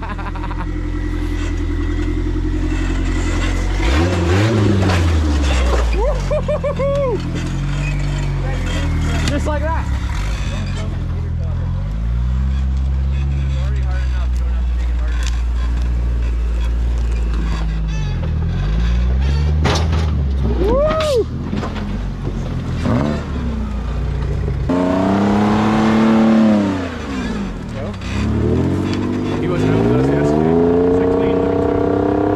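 Rock buggy engines running under load and being revved in bursts as the rigs crawl over rocks, the pitch rising and falling with each blip of throttle. The engine sound changes about 25 seconds in, giving way to a different engine revving hard in sweeping rises and falls.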